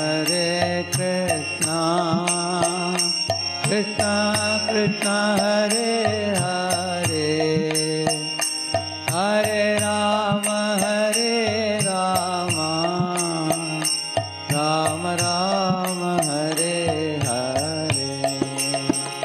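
A man singing a devotional chant with small hand cymbals (kartals) struck in a steady beat.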